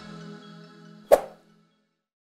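Outro music fading out, then a single short pop sound effect about a second in, timed with an animated click on a Subscribe button.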